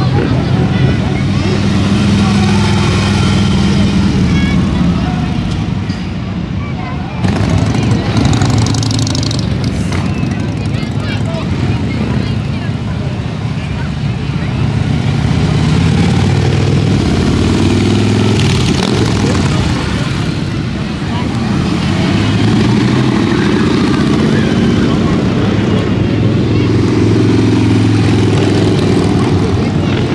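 Harley-Davidson V-twin motorcycles riding past one after another, the engine sound swelling and fading as each bike goes by, over the chatter of a crowd.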